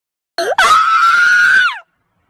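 A child screaming: a brief rising squeal, then one long high-pitched scream held for about a second that drops in pitch as it ends.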